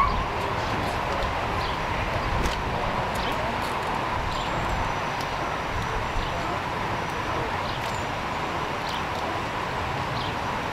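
Steady outdoor street background noise: a low rumble of traffic and idling vehicles with a faint steady tone and a few faint clicks.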